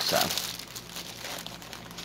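Clear plastic packaging of a cross-stitch kit crinkling as it is handled and opened, an irregular run of soft crackles.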